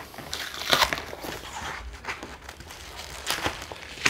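Cardboard box being opened by hand: its flaps rustling and scraping in irregular bursts, loudest just under a second in and again near the end.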